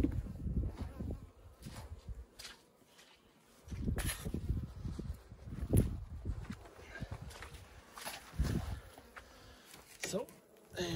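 Honeybees buzzing around an open hive, with bouts of low rumbling and a few sharp knocks.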